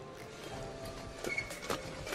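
Badminton rackets striking the shuttlecock in a fast doubles rally: a few sharp, irregular hits about half a second to a second apart, with players' footfalls on the court.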